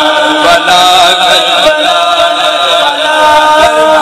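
A man's voice chanting a noha, an Urdu lament for Karbala, sung loudly and continuously into microphones through a public-address system.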